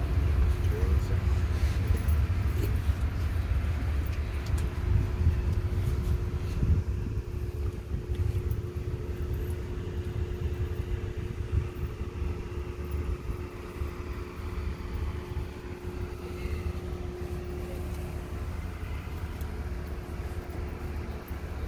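A fluctuating low rumble with faint, indistinct murmuring voices. A faint steady hum joins about six seconds in.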